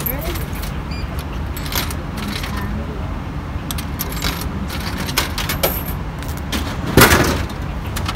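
Coins clicking one after another into a drink vending machine's coin slot, then about seven seconds in a loud clunk as a bottle drops into the dispensing tray. A steady low rumble runs underneath.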